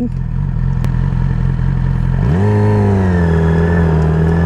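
Yamaha YZF R6's 600cc inline-four engine running at low revs, then about two seconds in the revs rise quickly and hold at a higher, steady pitch as the bike pulls away.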